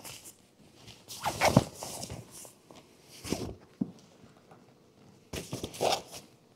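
Tent fabric rustling and scraping as the hard-shell rooftop tent is folded down and the fabric pushed in under its shell, in several short bursts with quiet gaps between.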